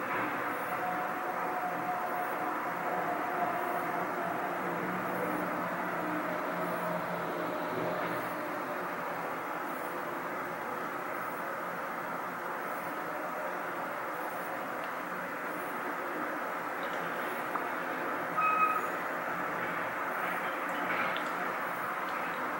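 Steady mechanical background hum, like an air conditioner or fan running. It holds one even level, with one brief faint pitched sound about three-quarters of the way through.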